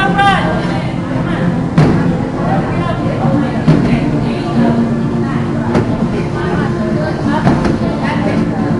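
Busy gym: indistinct voices throughout, with four sharp thuds at roughly two-second intervals.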